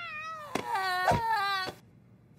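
A cartoon character's wordless vocal cry, with a short rising-and-falling call and then a longer wavering one that cuts off suddenly near the end.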